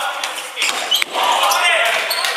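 Futsal ball play in a reverberant sports hall: indistinct players' voices calling out, with a sharp knock of the ball being kicked about a second in.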